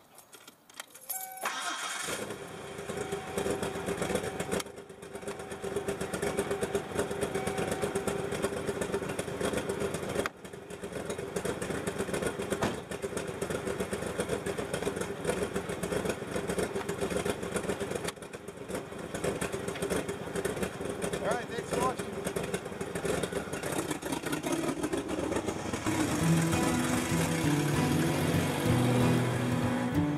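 Mazda B4000 pickup's 4.0-litre V6 starting about a second and a half in, then idling steadily before the truck pulls away. Music comes in near the end.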